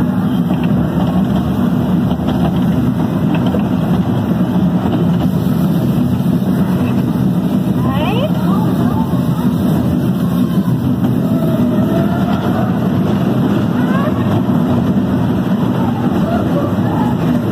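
Roller coaster train running along its track in a dark indoor ride: a loud, steady rumble, with voices mixed in and a short rising call about halfway through.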